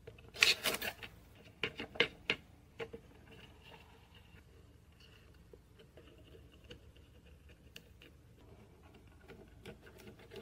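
Hands fitting a copper strip into a plastic screw-clamp test fixture. A burst of rubbing and scraping in the first second is followed by several sharp clicks over the next two seconds, then only faint small handling ticks.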